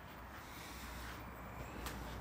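Faint handling noise from a phone camera being carried around a garage, with one sharp click near the end.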